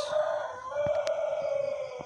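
A long, drawn-out animal call held on one steady note for about two seconds, falling away near the end.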